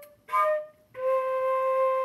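Concert flute playing slow single notes: a short E-flat, then a steady C held for three counts.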